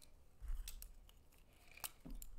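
Small plastic clicks and taps as gel pens are handled, capped and uncapped, set down and picked up. There are a few sharp clicks about half a second in and a louder one near the end, over faint handling rumble.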